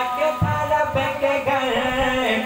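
A man's voice singing a devotional Urdu poem into a microphone, in long held notes that glide between pitches, carried over a loudspeaker system. There is a low thump about half a second in.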